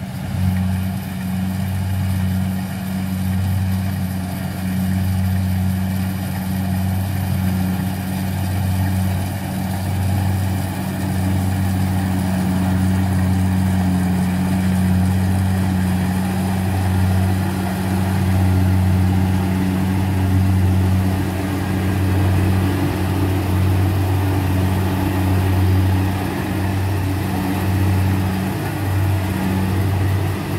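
Engine of a paddy harvesting machine running steadily under load, a deep even drone with small swells in level.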